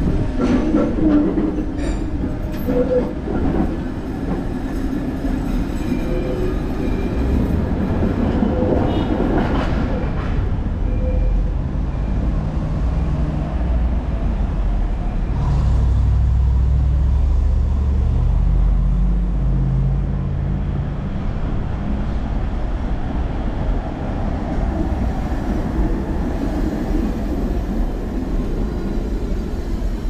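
Electric trams passing at close range: steel wheels clicking over rail joints and the motors whining for the first ten seconds or so, then fading into street noise. A low rumble swells about halfway through.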